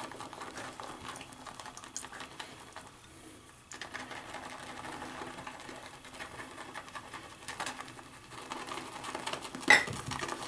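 Shaving brush whipping soft shaving soap into lather in a pottery bowl: a fast, even wet swishing and clicking, with a short pause about three seconds in and one sharp knock near the end.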